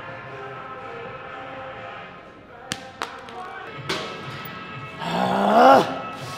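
Gym background music with three sharp clacks in the middle. Near the end comes a loud, drawn-out vocal strain from a man that rises and then falls in pitch, the kind of yell given while straining through a heavy set.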